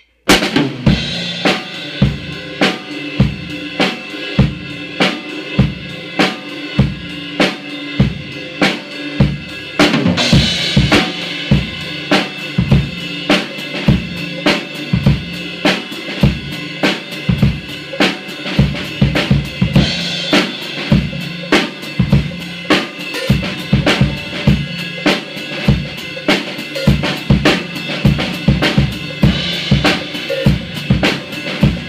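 A drum kit played in a steady four-four groove: kick and snare strokes under hi-hat, with a crash cymbal at about ten-second intervals marking the phrases. The strokes grow busier in the last third.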